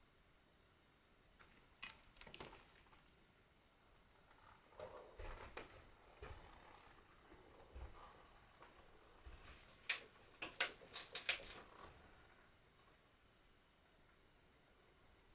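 Near silence in a small room, broken by faint scattered clicks and knocks, with a quick cluster of sharper clicks about ten seconds in.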